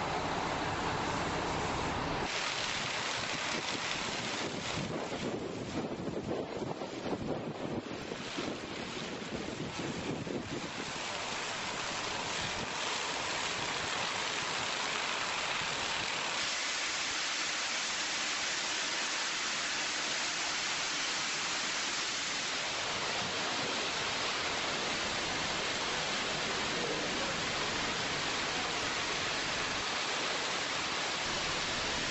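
Steady rushing hiss of a fire hose stream spraying from a high-rise nozzle. The tone shifts a few times, about two, ten and sixteen seconds in.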